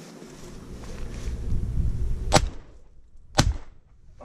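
Two 12-gauge shotgun shots about a second apart, a double fired at a passing pigeon. A low rumble of movement on the microphone comes before them as the gun is swung up.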